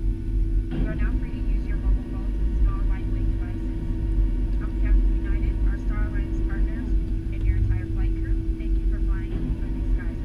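Cabin noise inside a Boeing 757 taxiing after landing: a steady low rumble from the engines and airflow, with a constant hum. Indistinct passenger voices murmur in the background.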